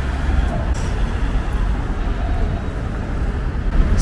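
Steady low rumble of city street traffic, even throughout with no distinct events.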